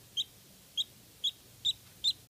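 Newborn Muscovy duckling peeping: four short, high peeps spaced about half a second apart.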